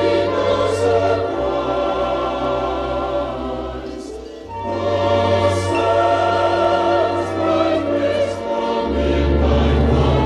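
Choir singing held chords over an orchestra, from a stage-musical cast recording. The music thins out briefly about four seconds in, then swells back, with a deep bass note coming in near the end.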